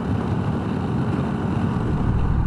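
Steady wind rush on the microphone over the drone of a Honda Rebel 1100's parallel-twin engine and tyres, cruising at freeway speed of about 76 mph.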